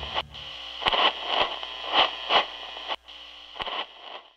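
Radio-like static hiss broken by about half a dozen irregular crackles and clicks, fading out near the end.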